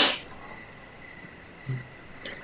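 A pause between speakers: a short breathy hiss right at the start, then low background hiss with a faint steady high whine, and a brief low murmur near the end.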